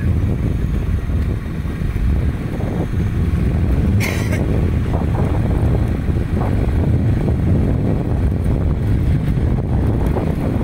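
Steady low rumble of a moving vehicle with wind buffeting the microphone, as when riding at night. There is a short hiss about four seconds in.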